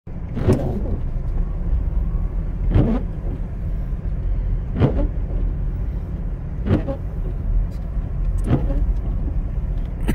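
Inside a car's cabin: a steady low rumble of engine and tyres on snow, with the windshield wipers sweeping across the snowy glass about every two seconds, five sweeps in all.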